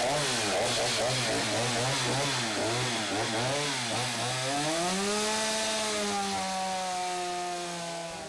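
Stihl two-stroke chainsaw cutting into a wooden block. Its engine pitch wavers up and down about twice a second at first, then climbs about halfway through and holds steady at a higher pitch.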